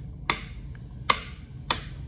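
Two-gang two-way wall rocker switch being pressed: three sharp clicks spread over about a second and a half as the bulbs are switched on and off.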